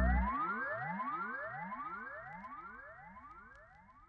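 Synthesized outro sound effect: a repeating series of rising pitch sweeps, about two or three a second, fading out steadily.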